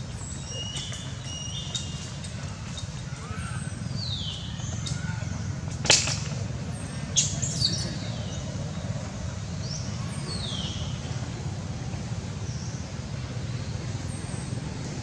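Outdoor ambience: birds chirping with short high calls and a few downward-sliding whistles over a steady low rumble. A single sharp crack sounds about six seconds in, followed by a few lighter clicks a second later.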